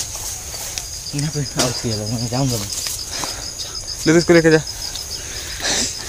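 Insects chirping in a steady, high, rapid pulse, about five pulses a second. A man's voice calls out briefly twice over it, the second time loudest.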